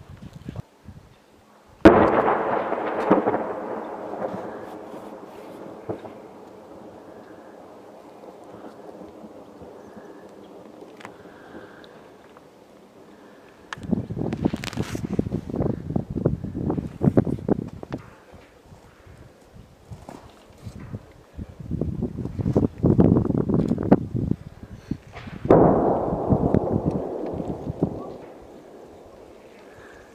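Two heavy blasts of gunfire or explosion: one about two seconds in, the loudest, and another near the end, each followed by several seconds of rolling echo. Between them come two stretches of dense, rapid crackling.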